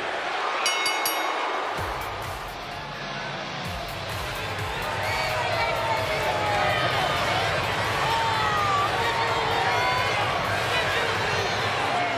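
A ring bell sounds briefly just after the winning pinfall, then an arena crowd keeps up steady cheering and shouting over music played on the arena speakers.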